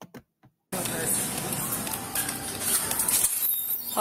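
Dense rustling and handling noise on a body-worn camera's microphone, with light metallic clinks and muffled voices, starting abruptly less than a second in.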